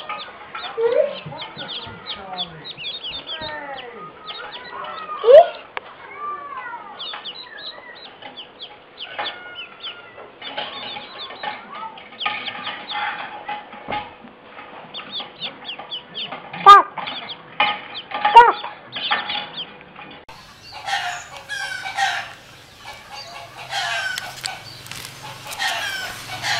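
A cluster of mallard ducklings peeping continuously in quick, short, falling chirps, with a few sharper, louder calls about five seconds in and twice around seventeen to eighteen seconds. About twenty seconds in a different recording takes over with louder, fuller calls.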